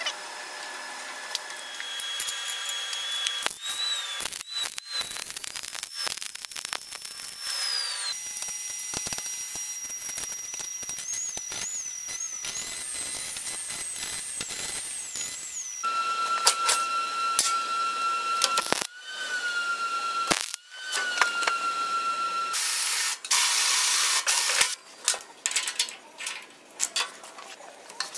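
A run of workshop tool sounds in quick succession: high whines that rise and fall in pitch, changing abruptly every few seconds, over scattered metal clicks and knocks, with a short burst of hiss near the end.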